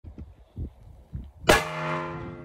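A single .30-06 bolt-action rifle shot about one and a half seconds in, fired through the hole of a large tire. It is followed by a steady, pitched ringing that slowly fades.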